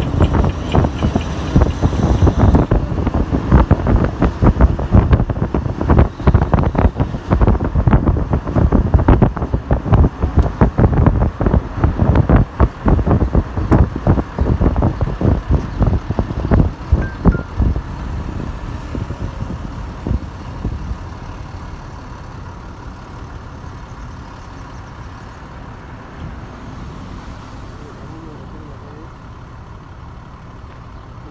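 Road noise from inside a moving car, with heavy irregular wind buffeting on the microphone for roughly the first eighteen seconds. It then settles to a quieter, steady rumble.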